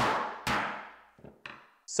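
Steel hammer striking soft sodium metal on a hard surface, cold-forging it flat into a disc: two strikes half a second apart, each ringing out briefly, then two faint light taps.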